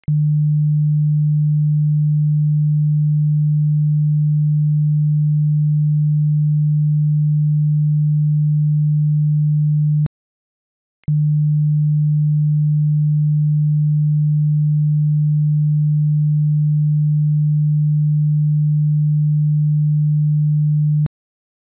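Steady 150 Hz sine test tone, a low pure hum. About ten seconds in it cuts off for roughly a second of silence, then resumes, with a faint click at each cut.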